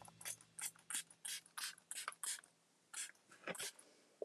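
Finger-pump spray bottle of Cadence 1-Minute Mirror Effect spray being pumped repeatedly: quick, faint hissing puffs of mist, about three a second, with a short break after about two and a half seconds.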